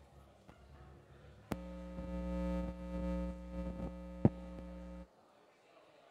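Electrical ground hum through the sound system as a guitar cable's jack is handled: a pop, a steady buzzing hum for about three and a half seconds with a loud click near the end, then it cuts off suddenly.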